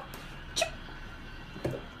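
Quiet room tone with a woman's single short spoken 'çip' about half a second in, and a brief soft knock near the end.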